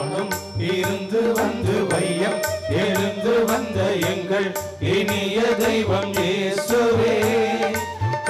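Tamil devotional church music: an instrumental passage of a hymn with a steady drum beat of about three strokes a second under a held, wavering melody line.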